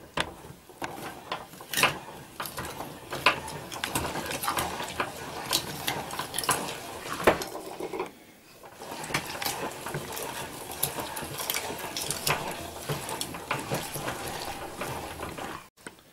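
Meat grinder grinding garlic cloves: an irregular run of mechanical clicks and crunching, with a short pause about eight seconds in.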